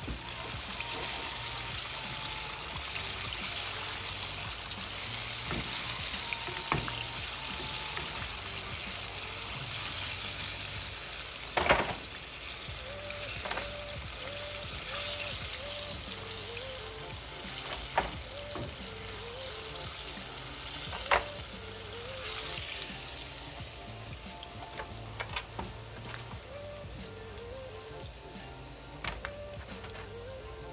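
Pork ribs deep-frying in a pot of oil: a steady hissing sizzle and bubbling that eases a little near the end. Metal tongs click against the pot a few times as pieces are turned and lifted out.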